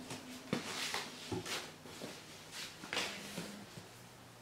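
A ribbon being untied and pulled off a gift box, making several short rustling swishes with light handling clicks.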